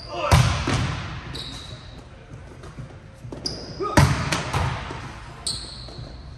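Volleyballs spiked hard: a loud smack about a third of a second in and another about four seconds in, each echoing through a large indoor hall, the second followed by a few quicker, lighter bounces of the ball on the court.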